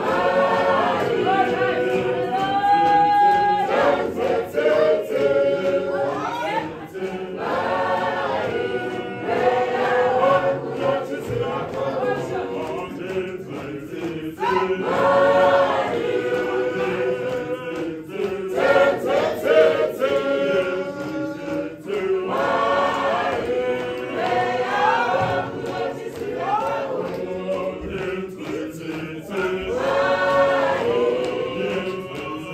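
Church choir singing a marching processional song in repeated short phrases.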